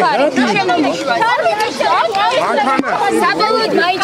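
Several voices talking loudly over one another: reporters crowding round and calling out questions at once.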